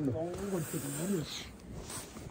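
A man's voice, quieter than the talk around it, with a rising and falling pitch for about the first second, then a short hiss that rises in pitch near the end.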